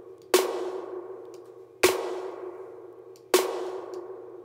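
Snare drum hits played through the Outer Space plugin's emulated spring reverb, heard wet only: three strikes about a second and a half apart, each with a long ringing tail that dies away. The reverb's treble EQ is being turned up.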